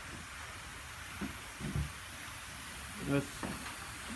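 Steady hiss of rain falling on the shop building, with a couple of faint low bumps in the first two seconds.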